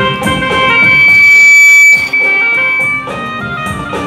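Church choir singing with instrumental accompaniment. A long held note swells to its loudest in the first half and breaks off about two seconds in, and the music carries on.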